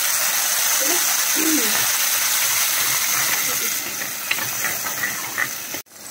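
Wet red paste sizzling as it is poured into hot oil in a pan: a loud, steady hiss that eases off after about four seconds and then cuts off.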